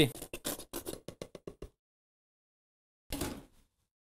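Tomato passata being poured and shaken out of a carton into a pot of soup: a quick run of soft clicks and plops that slows and stops, with a short noise about three seconds in.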